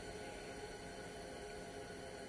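Quiet background: a faint, steady hiss with no distinct sound in it.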